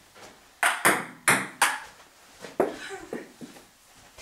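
Table tennis ball clicking off the paddles and the table in a rally: four quick, sharp hits about a third of a second apart, then a few weaker ones later.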